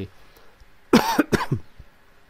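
A man coughs twice, two short sharp coughs about a second in.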